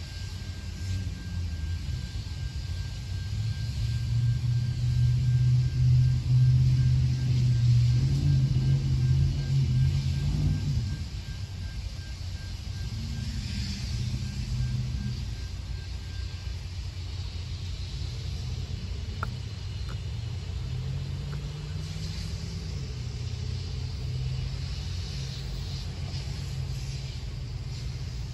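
Low engine rumble that swells over several seconds and then drops off suddenly about eleven seconds in, leaving a weaker rumble. A faint steady high whine runs alongside it until about sixteen seconds in.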